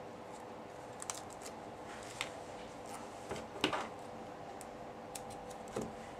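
Small scattered clicks and a brief rustle of paper about three and a half seconds in, from hands handling a sheet of foam adhesive dimensionals and cardstock, over a faint steady hum.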